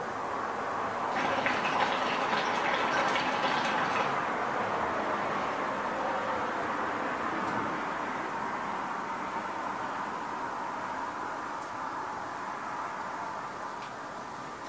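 Hookah water base bubbling as smoke is drawn through the hose. The bubbling is most vigorous about one to four seconds in, then settles into a steadier gurgle that gradually fades.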